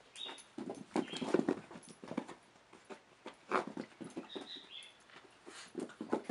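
Deer fawns moving about: scattered knocks and scuffs, with a brief high squeak at the start and another about four seconds in.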